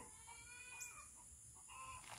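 Faint, distant rooster crow over a steady, high insect buzz.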